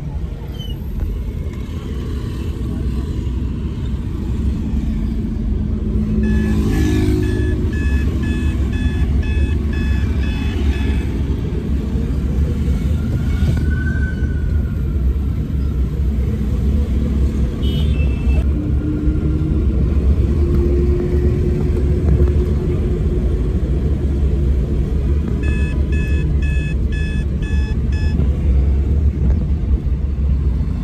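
Steady low rumble of a running car heard from inside its cabin. Twice a rapid electronic beeping pattern sounds: once for about five seconds about a fifth of the way in, and again for a couple of seconds near the end.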